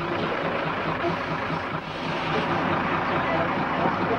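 Motor coach's diesel engine running steadily, with a background babble of boys' voices.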